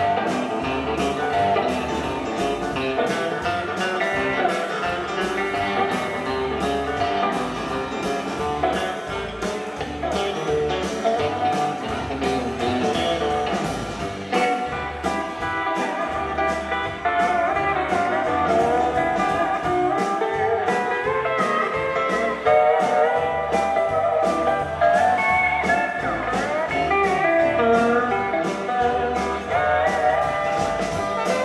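Live country band playing an instrumental break: guitar lead over a steady drum beat with bass, no singing.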